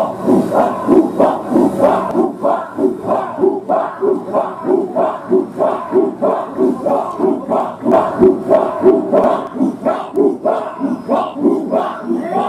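A large group of marines chanting a haka-style war cry in unison, with short rhythmic shouts about three a second.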